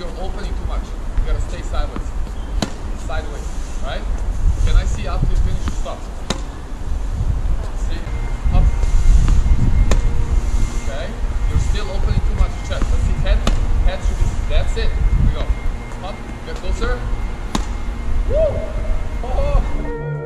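Tennis balls knocked off rackets and bouncing on a hard court every second or two, over a loud, uneven wind rumble on the microphone.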